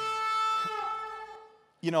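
A long, held horn blast, a trumpet-like note with a buzzy, rich tone, sounding the trumpet of God; it sags slightly in pitch and fades out a little over a second in.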